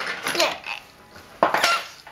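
A small toy train engine knocking and clattering against a plastic track bridge as a baby handles it, in two short bursts of knocks: one at the start and one about one and a half seconds in.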